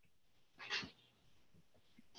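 A person's single short breath noise, a brief breathy puff roughly two-thirds of a second in, between otherwise near-silent pauses.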